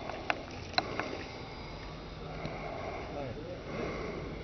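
Faint, steady, high whine of a distant model airplane's engine in flight, with two sharp clicks in the first second.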